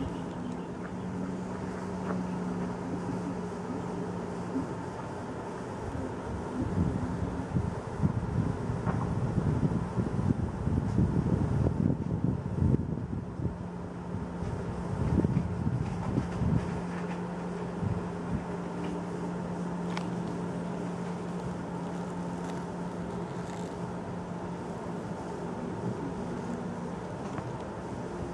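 A steady low hum runs throughout, with wind buffeting the microphone in gusts for about ten seconds in the middle.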